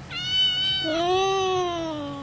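Calico cat meowing twice: a short high-pitched call, then a longer, lower meow that rises a little and falls away.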